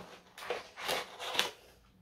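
Three brief rustles of small packaging about half a second apart, as a little paper freshness sachet is pulled out of a cardboard advent-calendar compartment.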